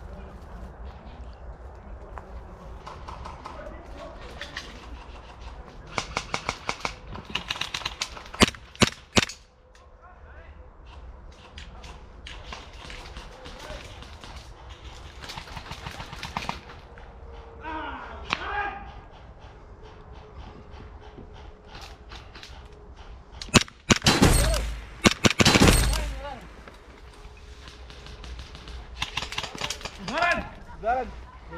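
Airsoft gunfire: a quick run of evenly spaced shots about six seconds in, a few louder single shots around eight to nine seconds, and a loud cluster of shots with heavy low rumble near the end.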